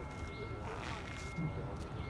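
Outdoor ambience: faint, indistinct distant voices over a steady low rumble, with a thin steady high-pitched whine running through it.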